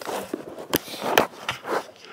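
Handling noise: rustling with several sharp knocks as the camera is picked up and swung across a table.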